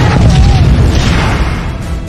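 A deep, loud explosion boom rumbling on and fading away over about two seconds.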